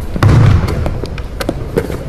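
Several sharp, irregular knocks echoing in a large gym: a basketball bouncing and players' shoes hitting the hardwood court during a footwork drill. The loudest burst comes early, with a low rumble under it.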